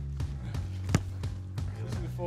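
A football struck once with a sharp thud about a second in, a corner kick taken with the left foot, over background music with a steady low bass.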